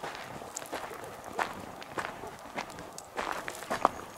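Footsteps crunching on the gravel and loose stones of a dry creek bed, a step every half second or so.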